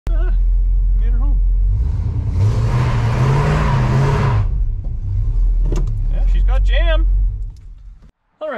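1968 Plymouth Satellite's V8 running in the car's cabin, blipped once about two seconds in, its pitch rising and falling with a loud rush of carburetor and exhaust noise, then settling back to idle before fading out near the end.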